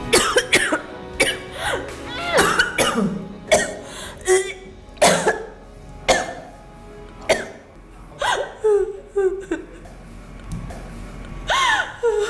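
A woman sobbing hard in sharp, gasping bursts about once a second, some breaking into short rising and falling wails, over a background music score.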